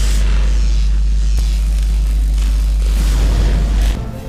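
Loud intro sound effect of crackling electricity over a deep, steady rumble, which cuts off sharply near the end.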